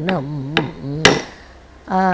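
A wooden stick (thattukazhi) struck on a wooden block, keeping the beat for a dance: two sharp strikes about half a second apart. Under them a voice sings an ornamented Carnatic line that stops about a second in, and a new held note begins near the end.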